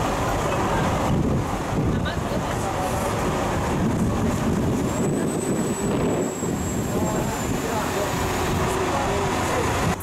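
Wind rumbling on the microphone over outdoor background noise, with voices of people nearby.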